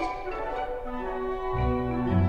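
Orchestra playing held notes in several instruments at once; low bass notes come in about one and a half seconds in.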